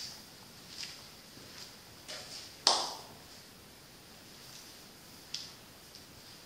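Footsteps walking away, a few short scuffs spaced under a second apart, with one louder knock about halfway through.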